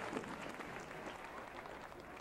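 Audience applauding, the clapping fading out steadily.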